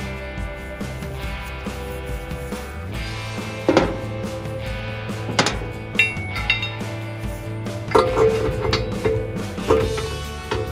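Background music with a string of sharp metallic clinks from about four seconds in, some ringing briefly: steel parts and a wrench knocking against the steel blade holder under a brush hog deck.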